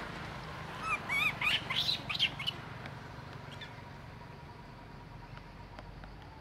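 Long-tailed macaque squealing: a quick run of high, wavering squeals and harsh screeches starting about a second in and over within about a second and a half.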